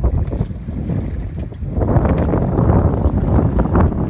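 Wind blowing across the microphone on an open boat, a loud low noise that grows stronger and spreads higher about two seconds in.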